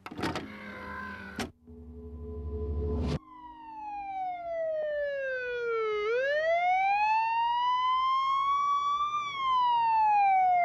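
A noisy burst, then a low hum that swells for about a second and a half, then a single siren-like wailing tone. The tone glides slowly down for about three seconds, rises again for about three, and starts falling near the end.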